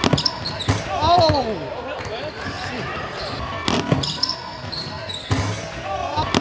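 Basketball game sounds on a hardwood court: a ball thumping on the floor and several other sharp knocks, with spectators shouting, one rising-and-falling shout about a second in.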